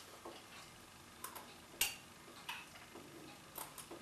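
Metal spoon clinking and scraping against a glass jar while food is spooned out of it: five or six faint, sharp clinks at irregular intervals, the loudest about two seconds in.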